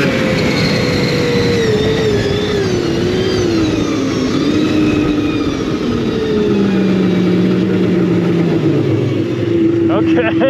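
Yamaha SRX 700 snowmobile's three-cylinder two-stroke engine winding down off the throttle after a full-throttle pull. Its pitch drops unevenly over several seconds and levels off lower near the end, over a steady rushing noise.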